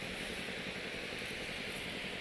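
Steady beach ambience: an even, unbroken hiss of outdoor noise with no distinct events.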